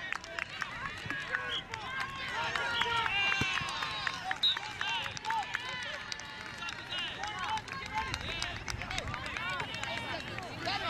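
Indistinct voices of players and spectators calling and shouting across an open field, many short overlapping calls with no clear words.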